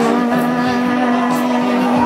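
A young woman's voice singing one long held note of a country ballad into a handheld microphone, over a backing accompaniment; the note ends near the end.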